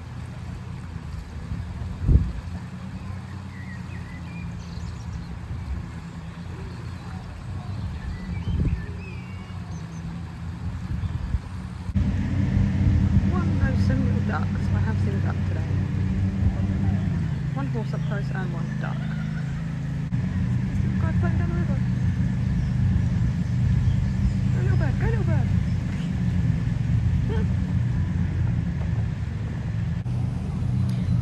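A high, fast-flowing river rushing past, a steady low rumble that steps louder about twelve seconds in.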